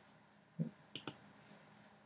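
Faint clicking from a computer pointing device as a selection is made. A soft low thump comes about half a second in, then two quick sharp clicks close together around the one-second mark.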